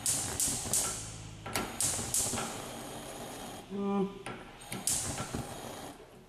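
Gas hob's electric spark igniter clicking: a run of sharp clicks at uneven intervals, each trailed by a short hiss, as a burner knob is turned to test the cooktop. A brief low hum comes just before the four-second mark.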